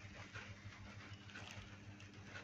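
Faint steady low hum, with soft scattered scratches and ticks from a baby star tortoise's claws catching on a plastic basket rim as it climbs over.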